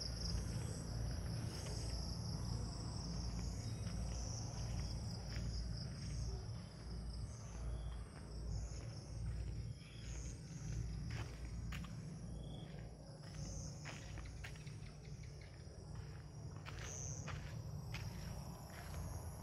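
Night insects chirping in a steady, high-pitched chorus over a low rumble, with a few faint clicks.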